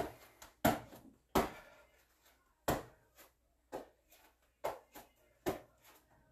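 Hands patting the shoulders and slapping back down onto an exercise mat during plank shoulder taps: a series of soft slaps, irregularly spaced, about one every half second to second.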